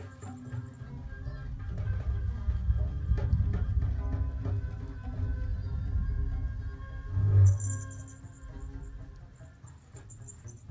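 Live acoustic jam of hand drums, djembe and goblet drum, over a few steady held tones. The drumming swells into a dense low rumble, peaks in one loud hit with a shaker rattle about seven and a half seconds in, then dies down quieter.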